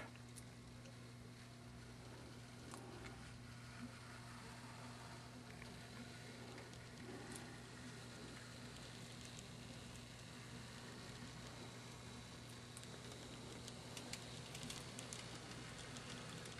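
N scale model train running quietly in reverse: a GE 70-ton diesel model on a Kato chassis hauling a string of freight cars, heard as a faint steady hum with a few light clicks near the end.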